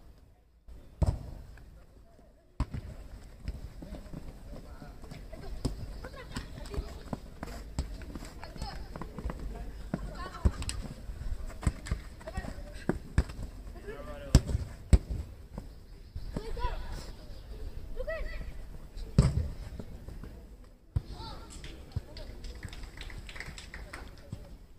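Football match play: distant voices of players and spectators calling out, with sharp thuds of the ball being kicked scattered through, loudest about 14 and 19 seconds in.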